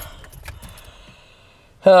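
Faint clicks and light rattling over a low rumble inside a car.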